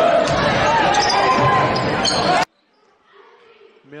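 Loud gymnasium crowd noise during a basketball game, many voices shouting and cheering with a basketball bouncing on the hardwood, which cuts off suddenly about two and a half seconds in, leaving a much quieter gym.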